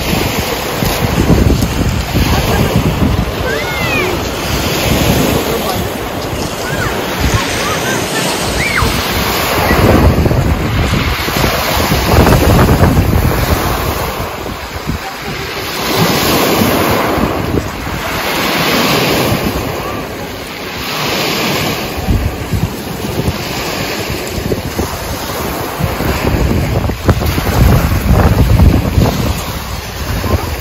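Sea waves breaking on a pebble beach and washing back over the shingle, swelling and falling every few seconds, with wind buffeting the microphone.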